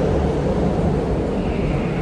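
Steady low rumble of background noise in a concrete car park, with no distinct events.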